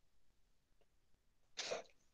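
Near silence, then about one and a half seconds in a single short, sharp burst of breath noise from a man, lasting about a quarter second.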